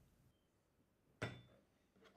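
Near silence, broken once a little past halfway by a short, soft knock: a gooseneck kettle being set down on the counter.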